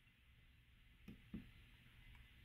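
Near silence: room tone, with two faint, brief sounds a little after a second in.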